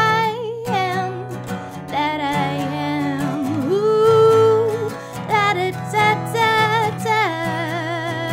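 A woman singing to a strummed acoustic guitar, her voice wavering with vibrato and holding one long note about midway.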